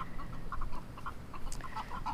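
Backyard hens clucking softly, a quick steady run of short notes, about five or six a second.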